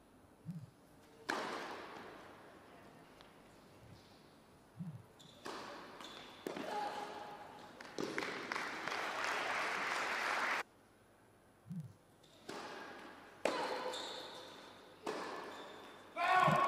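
Tennis match sounds: a tennis ball bounced on the court a few times, each a short low thud, sharp ball strikes, and stretches of spectator applause, the longest cutting off suddenly.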